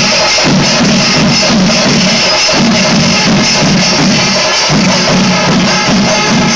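Panchari melam, the Kerala temple percussion ensemble, playing loud and continuous: massed chenda drums with the clash of ilathalam hand cymbals, in a driving repeating rhythm.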